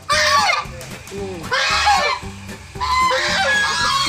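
White domestic geese honking in three loud bouts: one at the start, one about a second and a half in, and a longer one from about three seconds in.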